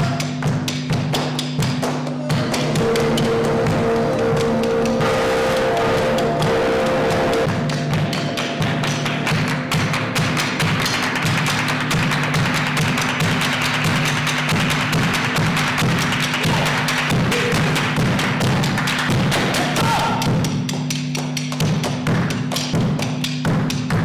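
Live flamenco singing over steady droning electric guitars, with fast hand clapping throughout. A held vocal note comes in the first few seconds, then the guitars swell into a dense, noisy wash through the middle before thinning out near the end.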